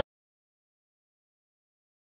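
Silence: the sound track is empty.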